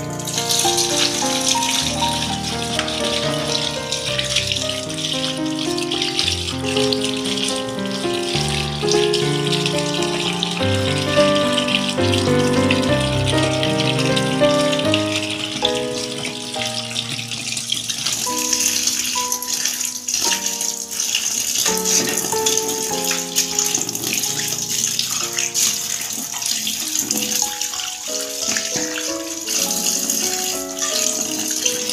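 A stream of running water pours onto raw whole shrimp as hands rinse them, a steady splashing hiss that gets louder a little past halfway. Background music plays throughout.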